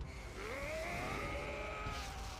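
A single long tone from the anime episode's audio track rises in pitch for about half a second, then holds steady.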